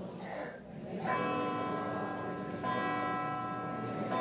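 Church bells ringing, with a new stroke about every one and a half seconds starting about a second in, each stroke ringing on with several steady tones.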